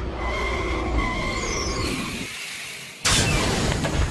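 Cartoon sound effects of a vehicle speeding along, with high sliding whistle tones, fading away. Then a sudden loud rush of noise comes about three seconds in and lasts about a second.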